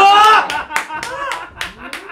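A man laughing loudly and clapping his hands, about six sharp claps roughly three a second, as the laughter goes on.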